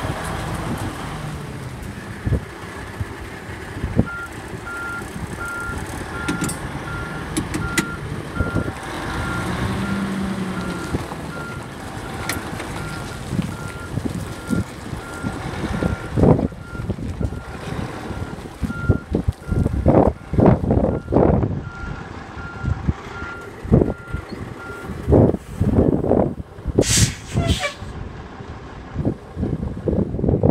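A heavy truck's diesel engine running, with a back-up alarm beeping steadily from about four seconds in until about 25 seconds in. In the second half, gusts of wind buffet the microphone.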